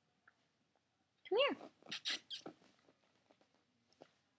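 A woman calling a cat in a high, sing-song voice, followed about half a second later by a quick run of short, sharp mouth sounds used to call it.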